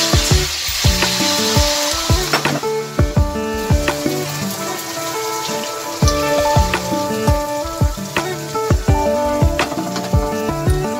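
Beaten eggs poured into hot oil in a frying pan, sizzling loudly the instant they hit and settling to a quieter fry after two or three seconds.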